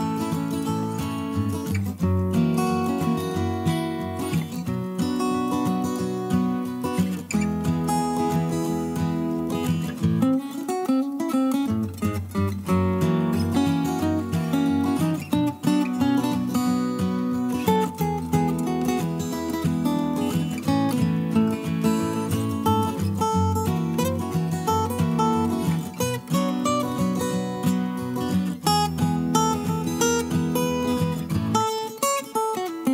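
Background music led by a strummed acoustic guitar, with a steady rhythm. The bass drops out briefly about a third of the way in.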